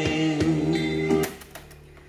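A song with singing and accompaniment playing from a cassette through a Victor CDioss QW10 boombox's tape deck, sounding clear. About a second and a quarter in the music stops with a click as the tape is stopped and the cassette door is opened.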